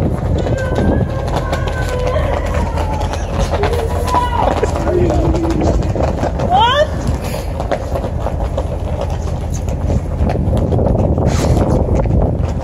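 Steady low rumble on a ferry's open deck, with wind on the microphone and faint voices over it.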